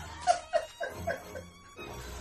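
Brief laughter, a few short bursts in the first second, over quiet background music.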